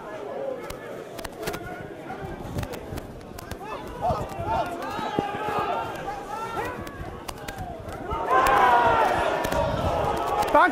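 Rugby players and spectators shouting and calling at a match, the voices much louder from about eight seconds in, with scattered sharp knocks.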